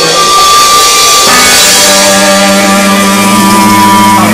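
Live rock band playing loud and amplified, drum kit and guitar together, with long held notes sounding over the band.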